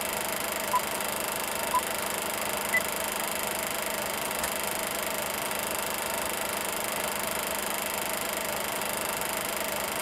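Film-countdown sound effect: a movie projector running with a steady whir, with two short beeps a second apart and then a higher beep about a second later.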